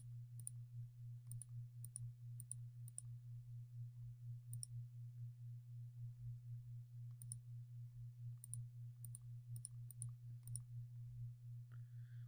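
Faint, scattered clicks of a computer mouse and its scroll wheel, some in quick pairs, over a steady low hum.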